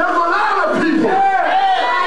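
A congregation shouting and calling out together, loud and continuous, over a man's raised voice through a microphone.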